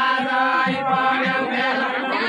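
Voices singing a deuda folk song together, a chanted line held on steady pitches.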